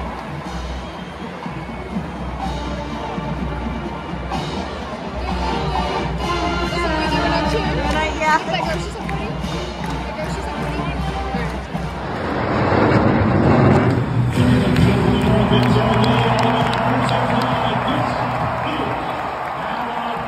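Marching band playing in a stadium over a large cheering crowd; about twelve seconds in, the cheering swells and gets louder.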